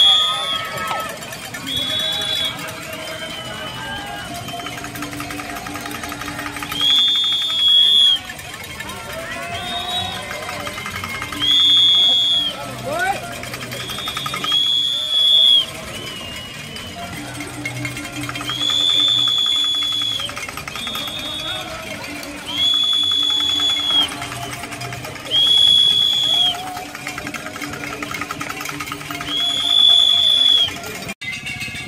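A whistle blown again and again in steady high-pitched blasts of about a second each, over spectators shouting and cheering.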